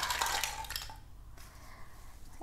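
Plastic toy vegetables clattering and rattling as they are tipped off a toy plate onto artificial grass, the rattle dying away after about a second.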